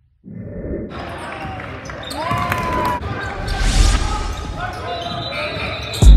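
Basketball game sounds in a gym: ball bouncing on the hardwood, sneakers squeaking and players' voices, echoing in the large hall. It starts about a quarter of a second in, after a moment of silence.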